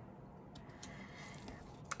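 Faint handling of die-cut cardstock pieces on a card: a few light ticks over quiet room tone, the clearest just before the end.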